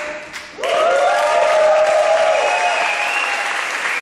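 Audience applauding, louder from about half a second in, with voices cheering over the clapping.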